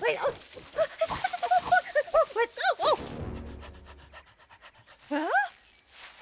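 A cartoon animal character's wordless vocal sounds: a quick run of short, panting yelps for about three seconds, then a rattling stretch of evenly spaced ticks, and one more rising-and-falling call near the end.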